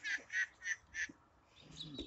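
A man's short, breathy laugh: four quick, unvoiced puffs of breath about a third of a second apart.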